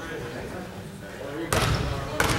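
A basketball bounced once on a hardwood gym floor about one and a half seconds in, a sharp thud that rings in the large hall, as the shooter dribbles at the free-throw line. Low voices murmur before it.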